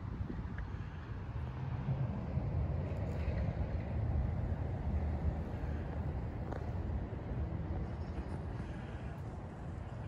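Outdoor town ambience: a low, uneven rumble of road traffic with wind on the microphone.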